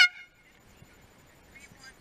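One short horn blast from a sailing race committee boat, about a quarter second long. It is the committee's signal for a boat crossing the finish line.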